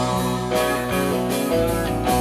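Live rock band playing an instrumental passage: electric guitars over bass and drums.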